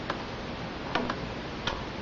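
A few separate sharp clicks from a laptop keyboard, over a steady hiss of room noise.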